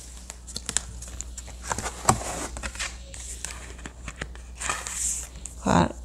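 Cardboard pages of a board book being handled and flipped: a scatter of soft rustles and light clicks, with one sharper tap about two seconds in.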